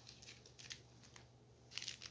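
Faint crinkling and rustling of a paper envelope being handled, with scattered small crackles and a denser rustle near the end.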